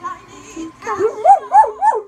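Dog howling: three rising-and-falling yowls in quick succession, starting about a second in, over music playing in the background.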